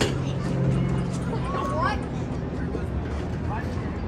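Outdoor ballfield ambience: faint, distant voices of players and spectators over a steady low hum of city traffic, with a sharp click at the very start.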